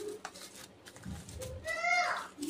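Plastic bubble wrap crinkling faintly as hands handle wrapped flower pots. Near the end comes a short, high-pitched, clearly pitched call lasting about half a second, from an unidentified source.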